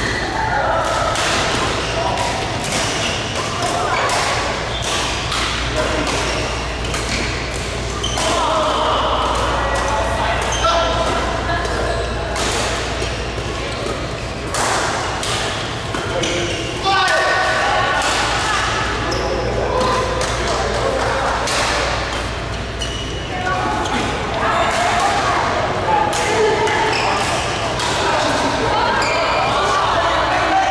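Badminton rackets striking a shuttlecock in a doubles rally, sharp hits at irregular intervals, with voices, in a large echoing hall.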